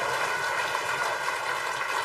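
Studio audience applauding, a steady wash of many hands clapping that slowly dies down.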